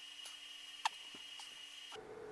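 Faint small plastic clicks as battery-pack balance wires are snapped into their harness clips, with one sharper click a little under a second in.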